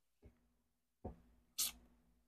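A quiet pause with faint room hum. A single short, breathy hiss about one and a half seconds in, like a quick sharp breath from one of the tasters.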